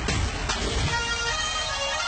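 Bollywood dance music playing loud, with a heavy bass beat.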